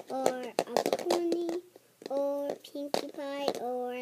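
A young girl singing a wordless tune in short held notes that step up and down in pitch, with a few clicks from the plastic toy egg in her hands.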